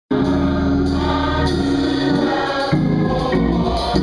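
Gospel choir singing sustained, full chords, cutting in abruptly at the start and moving to a new chord about two and a half seconds in.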